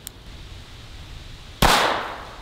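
A single .22 Long Rifle shot from a Taurus PT-22 pistol near the end: one sharp crack that trails off over about half a second.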